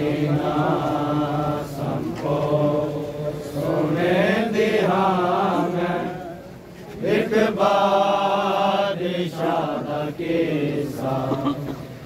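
Male voices chanting a Punjabi noha (Shia lament) unaccompanied, in long drawn-out sung lines with a short pause about six seconds in.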